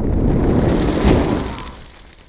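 Logo-animation sound effect: a loud, noisy burst with a heavy low end that fades away over the second half.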